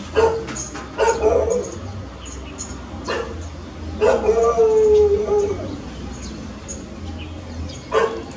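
Animal cries: a few short calls near the start, one long, steady drawn-out call about four seconds in, and a short call at the end, over a steady low hum.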